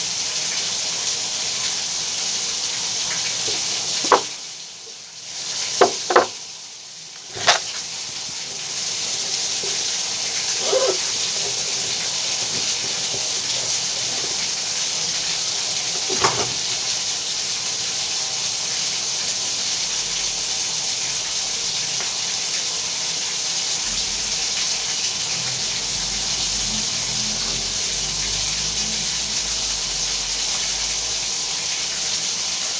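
Water rushing steadily as it drains from a dismantled stop valve, because the supply cannot be shut off. The rush drops away twice, for about a second each time, between four and eight seconds in. A few sharp knocks are heard, one of them about sixteen seconds in.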